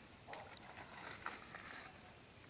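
Quiet outdoor background with a faint even hiss and a couple of small, soft noises, one about a third of a second in.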